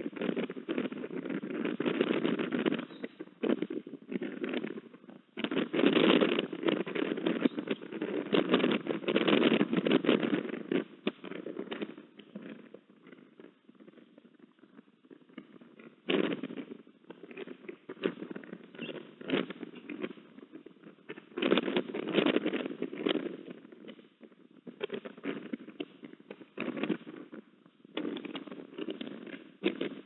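Wind gusting against an outdoor camera microphone, coming in bouts of a few seconds with crackling in them and a quieter lull midway.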